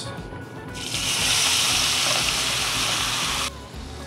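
Potatoes and onions tipped into a hot cast iron skillet of brown butter and steak juices, sizzling loudly for about three seconds before the sound cuts off suddenly.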